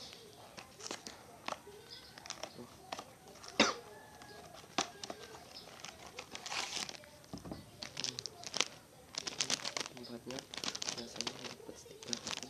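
Crinkling and rustling of a Pocky pack's plastic wrapper and cardboard box as they are handled and opened, with one sharp crack about three and a half seconds in, the loudest sound. The crinkling grows busier in the second half.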